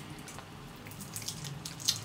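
Faint small ticks and scratches of fingernails picking at and peeling tape film off a small aluminum part, with a sharper click near the end.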